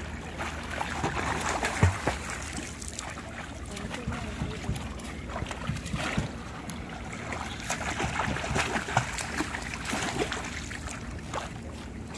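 Water splashing from a child swimming freestyle: arm strokes and kicking feet churn the surface in an irregular run of splashes.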